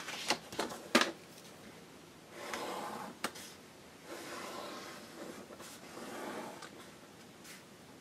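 Pencil drawing lines on cardstock: a few light taps and paper handling at first, then three scratchy pencil strokes of about a second each.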